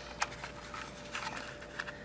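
Faint scattered clicks and rustling of insulated wires being pushed down into the plastic wiring compartment of a rotary level indicator, over a faint steady hum.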